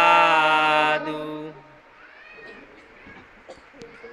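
Chanting voices holding one long, steady note at the close of a Pali Buddhist recitation. The note stops about a second in, a lower voice trails off half a second later, and faint hall sound follows.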